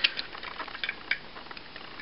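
Plastic parts of a Transformers action figure being handled during its transformation: a few light clicks and rubbing of plastic in the first second or so as a piece is worked into place, then quieter.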